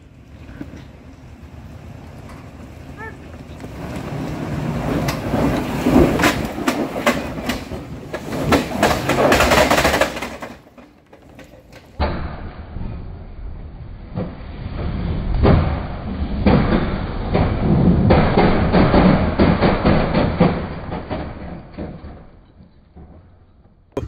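Lexus GX470's 4.7-litre V8 run hard under heavy load, its tires spinning and clawing up a steep, rutted dirt grade with dirt and rocks clattering against the truck. The noise builds for several seconds, drops off briefly about eleven seconds in, then comes again and fades near the end.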